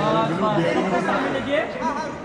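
Several voices talking and calling out over one another: photographers' chatter as they shout directions to a person posing.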